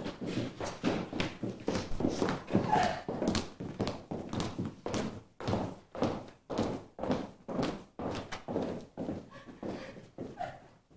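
Footsteps of several people walking across a wooden stage floor, a steady knocking tread about two steps a second.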